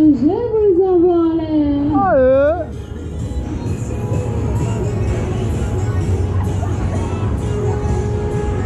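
Fairground ride music with a voice holding and bending long notes for about the first two and a half seconds, then the noise of the moving ride: a steady low drone under a noisy rush.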